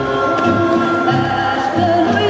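Portuguese folk music with group singing, played over loudspeakers for dancing, with a steady bass beat about twice a second.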